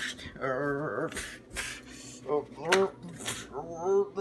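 A young person's voice crying out in alarm three times, with short breathy hissing sounds between the cries.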